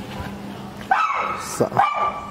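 Gaddi puppy barking: a few short, high-pitched barks starting about a second in.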